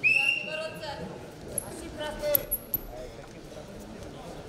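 Loud shouting in a wrestling arena: a sudden loud call right at the start, then further short shouts about two seconds in, over the hall's background noise.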